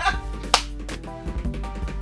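A hip-hop beat being demonstrated: steady pitched tones under sharp percussive hits, the loudest hit about half a second in and a few lighter ones past the middle.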